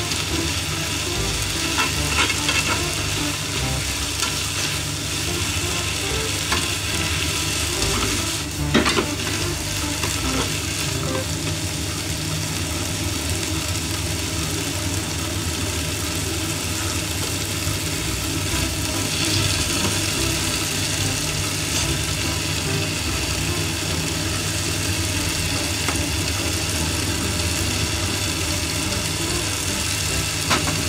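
Mizuna, carrot and onion sizzling in a nonstick frying pan as they are stir-fried and turned with chopsticks, with a few sharp clicks of the chopsticks against the pan about 2 and 9 seconds in. A steady low hum runs underneath.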